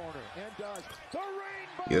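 NBA game broadcast audio, fairly quiet: a commentator's voice over basketball court sounds from the game.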